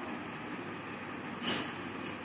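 Steady background noise, hiss-like and fairly quiet, with one short breathy hiss about one and a half seconds in.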